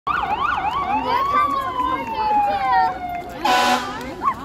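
Emergency-vehicle siren: a quick up-and-down yelp, then a single wail that rises and slowly winds down. A short, loud horn blast follows near the end.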